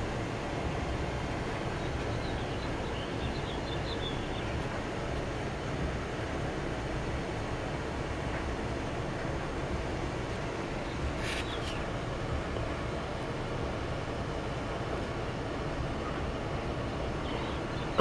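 Steady ambient background noise with no clear event, carrying a few faint high chirps about three seconds in and a brief one around eleven seconds.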